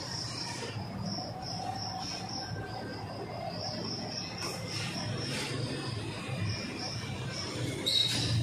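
An insect trilling high and steady in short pulsed runs, with a few faint marker strokes squeaking on a whiteboard about halfway through.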